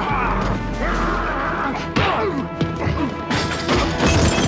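TV brawl soundtrack: punches and crashes of a bar fight over orchestral fight music, with a sharp crash about two seconds in and more blows near the end.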